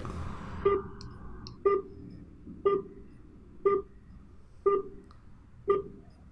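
Short telephone beeps, one a second, six in all, over a faint line hiss: call-progress tones on an answered masked call while it connects to the other party, before the ringback starts.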